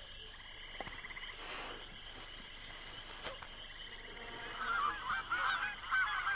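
Faint hiss, then from about four and a half seconds in several overlapping honking bird calls that grow louder.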